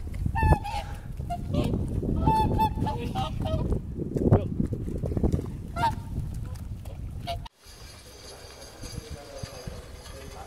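Whooper swans calling at close range: a run of repeated honking calls over wind rumbling on the microphone. About seven and a half seconds in the sound cuts off abruptly to a quieter, steady background.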